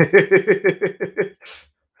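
A man laughing, a quick run of about eight 'ha' pulses over a second and a bit, followed by a short breath in.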